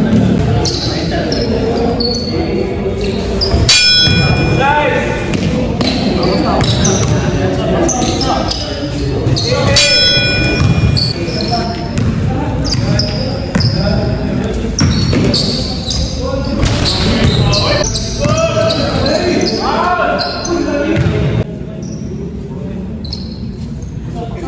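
Basketball bouncing on a gym floor in play, with players' voices and shouts echoing in a large hall. Two sharp high squeaks stand out, about four and ten seconds in.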